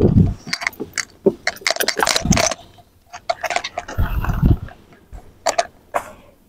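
Clicks, knocks and a few dull thumps of a person moving in and out of a van's leather captain seats by the open sliding door. The thumps come near the start, about two seconds in and about four seconds in.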